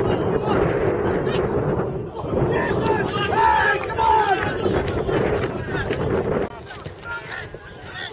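Players shouting to one another during an amateur football match, over a steady, loud rumbling noise that drops away about six and a half seconds in.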